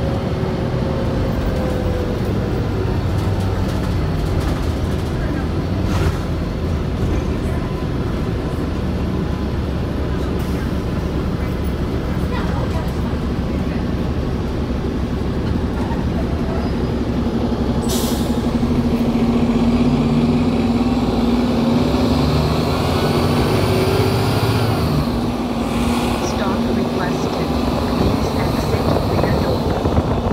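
Diesel engine and drivetrain of a 2008 New Flyer city bus running, heard from inside the cabin as the bus drives, its drone getting louder and a little higher in the second half. A brief hiss of air cuts in once partway through.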